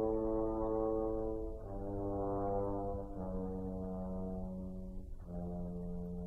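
French horn playing slow, long held notes, four in a row, stepping gradually lower in pitch, with a brief break for breath just after the third.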